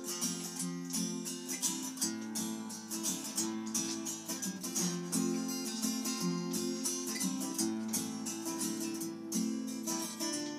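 Background music: a strummed acoustic guitar playing a steady rhythm.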